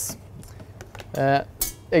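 Light clicks and clinks of kitchen equipment being handled at a stand mixer, as a plastic tub is emptied into the steel bowl and the wire whisk is fitted, with a brief bit of voice about a second in.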